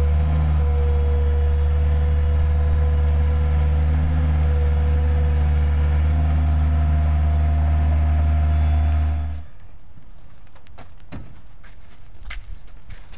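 New Holland LS160 skid-steer loader's engine running steadily under load, with a held whine over its low drone, while its auger attachment works a post hole. It cuts off suddenly about nine seconds in, leaving quieter outdoor background with a few faint knocks.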